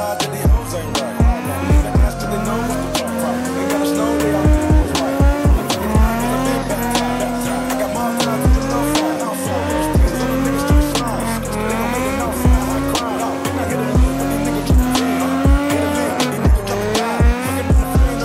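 A Nissan 350Z's VQ V6 revving up and dropping back again and again while drifting, with tyres squealing, over hip hop music with a steady beat.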